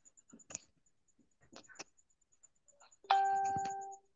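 A few light clicks, then about three seconds in a single bell-like chime rings out and fades over most of a second.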